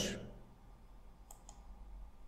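Two faint computer mouse clicks about a fifth of a second apart, a little over a second in.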